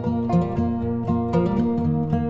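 Instrumental background music of plucked-string notes, a new note starting every few tenths of a second.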